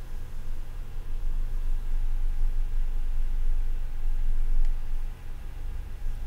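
Steady low rumble of background noise with a faint hum over it, and no speech.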